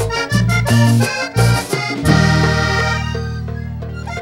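Vallenato band led by a button accordion, with bass and percussion, playing the closing phrase of a song in short, punchy notes. About halfway in they land on one long held final chord.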